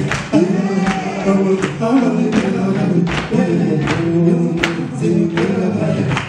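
Male vocal group singing a Zulu sangoma song live in close harmony, with a sharp percussive beat about every three quarters of a second.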